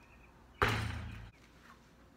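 A basketball striking a driveway hoop's backboard and rim once, about half a second in: a single sharp bang followed by a low ringing that dies away within a second.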